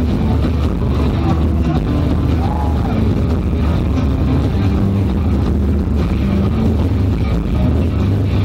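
Rock band playing loud live through a PA, with a heavy, steady bass and drum low end and a vocal line over it.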